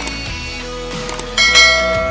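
A bell-like notification chime, the sound effect of a YouTube subscribe-button animation, rings out about one and a half seconds in after a few small clicks, over background pop music.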